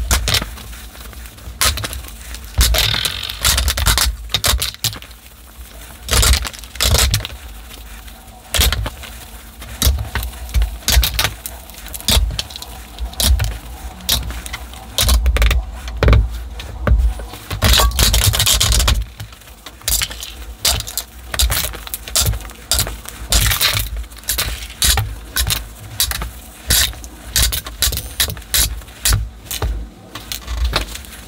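Cosmetic containers (compacts, lipstick tubes, palettes) handled and set down on a tabletop, giving frequent small clicks, knocks and rattles, with stretches of a cloth rubbing as items are wiped.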